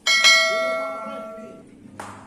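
A single bell chime sound effect rings out suddenly and fades away over about a second and a half.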